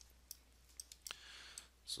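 Faint computer mouse clicks, about five short ones spread through the two seconds, with a soft breath near the middle.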